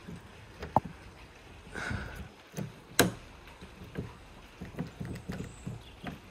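A key being forced with pliers in a stiff car boot lock, making a few faint metallic clicks and creaks, with one sharp click about three seconds in. The lock is stiff from long disuse.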